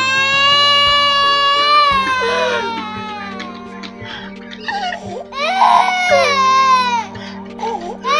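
A man wailing aloud in two long, high, drawn-out cries: the first trails off about two and a half seconds in, and the second comes after a short gap about halfway through. A steady background music bed runs underneath.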